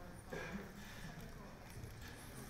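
Quiet room with a single short spoken word near the start, then only faint, indistinct voice and room noise.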